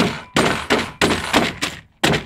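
A long-handled stomper tool pounding caramel corn on a baking tray, crushing it into crumbs: about six sharp strikes, roughly three a second.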